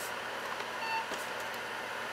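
A single short electronic beep from the Toshiba T1000SE laptop's built-in speaker about a second in, over a steady fan-like hiss.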